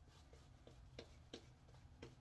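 Faint, evenly spaced soft ticks, about three a second, from a badger shaving brush being stroked back and forth over lathered skin.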